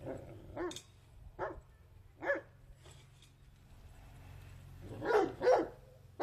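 Leonberger dogs barking in play: three single barks about a second apart, then two louder barks in quick succession near the end.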